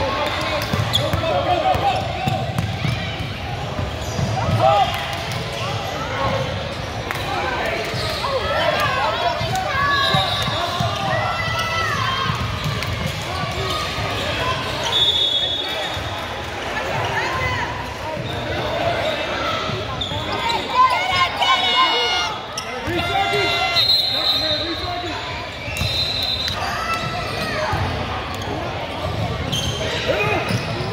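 Basketball being dribbled on a hardwood gym floor, with sneakers squeaking and players and spectators calling out throughout, all echoing in a large gym.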